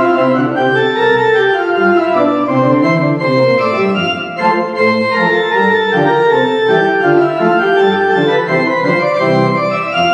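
Church organ played in full chords over a moving bass line: a lively free composition, steady and loud throughout.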